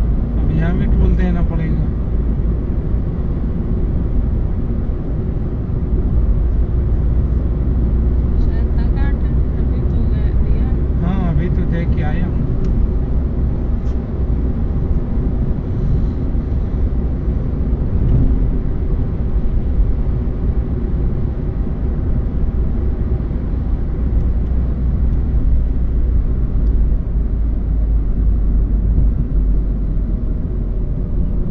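Steady low rumble of a car cruising at highway speed, heard from inside the cabin: tyre and engine noise on a smooth, newly built highway surface.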